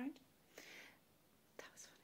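A woman whispering softly: a short breathy whisper without full voice, otherwise near silence.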